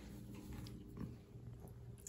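Quiet room tone with a faint steady low hum and one soft, short sound about a second in.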